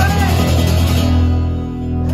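Acoustic guitar strumming chords over an acoustic bass guitar holding low notes, played live.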